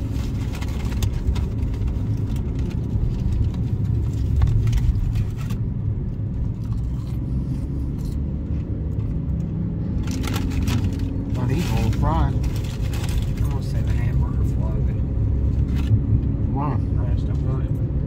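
Steady low rumble of a car's road and engine noise heard from inside the cabin while driving, with a few brief higher wavering sounds about twelve and sixteen seconds in.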